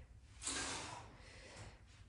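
A man's forceful breath out with the effort of an exercise rep: one hissing exhale that starts about half a second in and fades over most of a second.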